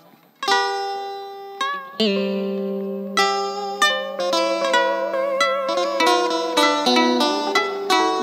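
Instrumental intro on plucked strings in the style of Vietnamese cải lương accompaniment. It starts sharply about half a second in, with notes that bend and waver in pitch over a low note held from about two seconds in, and the notes come faster toward the end.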